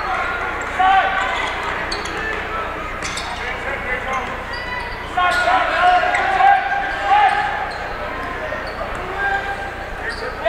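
Basketball game sounds in a gym: the ball dribbling with short knocks on the hardwood, and crowd and player voices that swell about halfway through.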